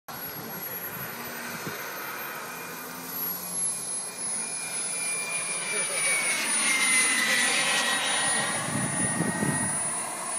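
Electric ducted-fan RC model jet whining as it flies past, growing louder to a peak about seven seconds in while its pitch falls slightly.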